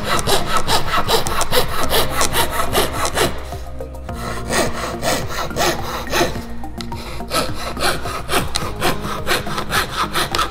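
Coping saw cutting a curve in a thin wooden board by hand, in quick even strokes of about four a second, easing off briefly twice as the blade is turned round the curve.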